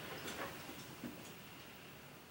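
Faint rustling and a few soft clicks as a person sets a bag down on the floor and settles into an office chair, fading away toward the end.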